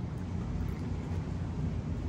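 Steady low background hum with no distinct events: room tone.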